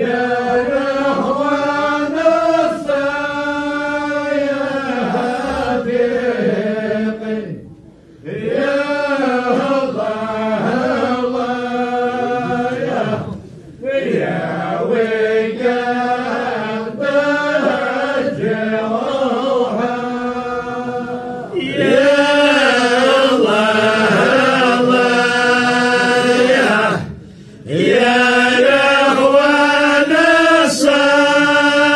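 Vocal chanting: a voice holding long, wavering melodic phrases, with short breaks for breath. It grows louder about two-thirds of the way through.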